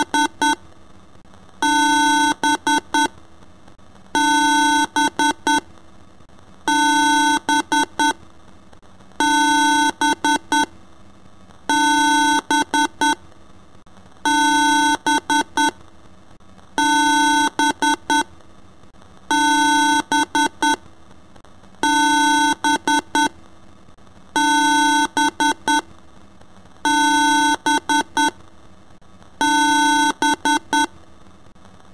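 A harsh synthesized electronic beep pattern looping about every two and a half seconds: a held tone lasting under a second, then three or four quick beeps, alarm-like.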